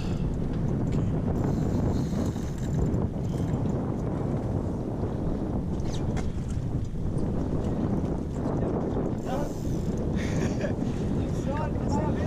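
Steady wind noise buffeting the microphone over the sound of the boat and sea, with a few brief faint voices near the end.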